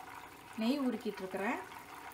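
Butter simmering into ghee in a stainless-steel saucepan, a faint bubbling sizzle under a short spoken word.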